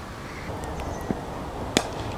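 A single sharp crack of a cricket bat striking the ball near the end, over a steady hiss of wind on the microphone.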